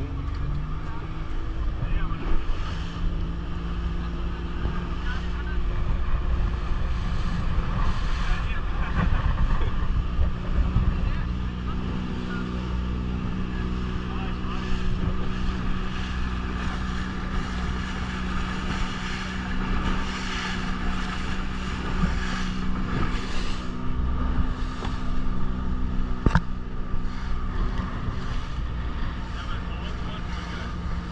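Outboard motor of an open fibreglass boat running steadily under way, with wind on the microphone and water rushing past the hull. A single sharp knock comes near the end.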